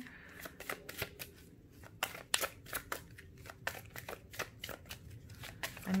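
A deck of Barbieri Zodiac Oracle cards being shuffled in the hands: a run of light, irregular card slaps and flicks, several a second.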